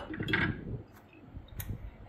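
Light kitchen handling noise: a sharp click at the start and a fainter click about a second and a half in, with soft rustling between.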